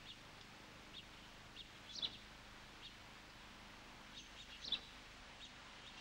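Faint, scattered short bird chirps, a dozen or so at irregular intervals, the loudest about two seconds in and near the five-second mark, over a faint steady low hum.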